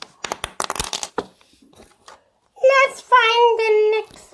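Small clicks and rustles of hands handling plastic toys for about a second, then a child's voice making two wordless, drawn-out sung sounds, the second held steadily for nearly a second.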